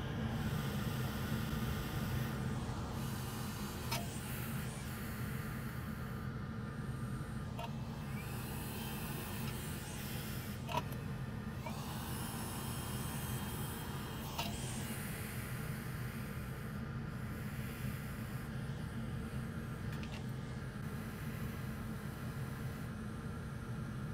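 A steady low hum, with a few faint clicks about four, eleven and fourteen seconds in.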